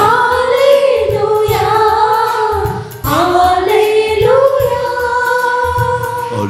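Telugu devotional worship song with musical accompaniment, the voice holding long notes in two phrases broken about three seconds in, over a steady low beat.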